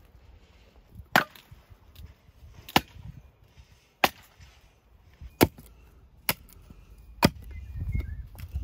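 Axe chopping wood: six sharp single strikes, about a second to a second and a half apart.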